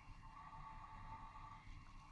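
Near silence: faint room tone with a faint, steady high hum.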